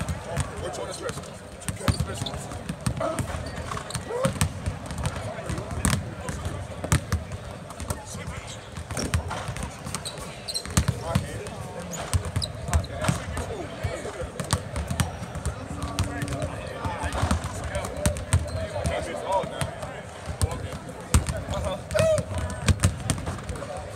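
Several basketballs bouncing on a hardwood court in a large arena, an irregular, overlapping run of thuds as players dribble and shoot. Voices chatter in the background.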